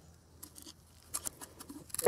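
Faint clicks and light scratching as fingers handle and flex the shot-through hard drive's broken circuit board and casing, with a few sharper ticks in the second half.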